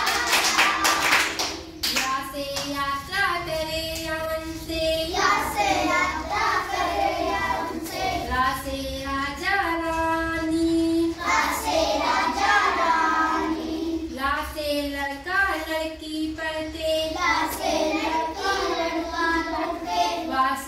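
A group of children singing the Hindi alphabet song (varnamala geet) together in a simple chant-like tune, with hand-clapping at the start that stops after about two seconds.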